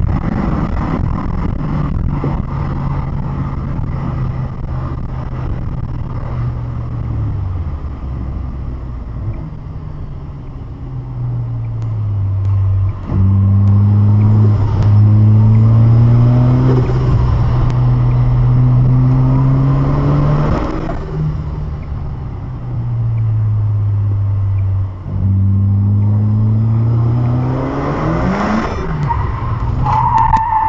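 Mazda RX-7's engine heard from inside the cabin: a steady drone at high speed, dropping in pitch as the car slows, then revving up hard through the gears. Revs rise with each pull, with brief dips at the gear changes about a third of the way in and again near the end, and the middle stretch is the loudest.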